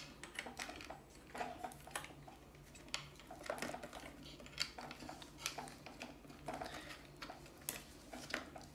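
Faint, scattered small clicks and rustles of a battery pack and its wires being handled and pushed into a hard plastic toy body.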